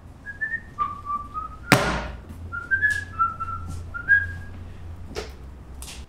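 A person whistling a short tune, a series of held notes stepping up and down, with a loud sharp thump nearly two seconds in and a few light clicks later.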